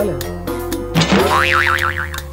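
Background music with a comic sound effect laid over it: about a second in, a tone sweeps upward and then wobbles quickly up and down in pitch.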